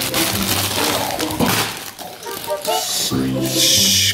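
Plastic bag of green beans crinkling and rustling as hands open and handle it, in two spells with a short lull midway, over background music.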